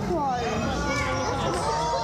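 Children's high voices calling and chattering among a crowd of onlookers, over a steady low hum.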